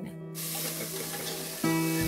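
Diced onions frying in a pot for a sofrito: a steady sizzle that starts about a third of a second in, over background music with held notes.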